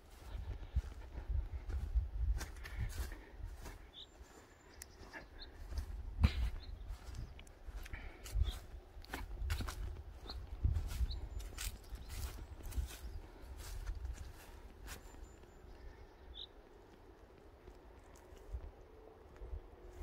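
Footsteps on dry grass and soil, with wind rumbling on the microphone throughout and a few short high chirps, quieter in the last few seconds.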